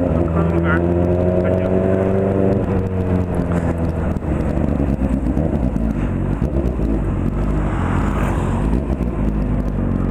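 Honda Hornet 600 motorcycle's inline-four engine heard from the bike while riding. It holds a steady note for the first couple of seconds, then the note falls away as the throttle closes, leaving a rougher low rumble mixed with wind and road noise.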